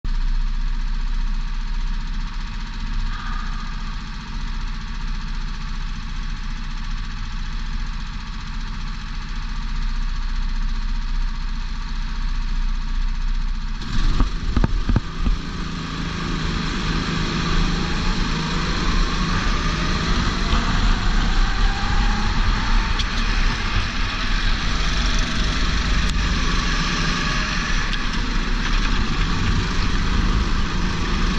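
Go-kart engines idling on the starting grid, heard from a helmet-mounted camera. About 14 seconds in come a few sharp knocks, then the engines open up and rise in pitch as the karts pull away, with wind noise growing.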